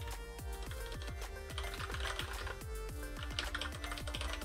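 Background music with a steady beat, and typing on a computer keyboard in two short runs, about one and a half and three and a half seconds in.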